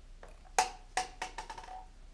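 A lottery ball dropped into a clear upright plastic tube, bouncing: a sharp ringing ping about half a second in, then several quicker, fainter bounces that settle within about a second.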